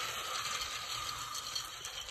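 Labrador retriever puppies moving about on wood-chip mulch: a light, even crackling rustle of paws shuffling in the chips.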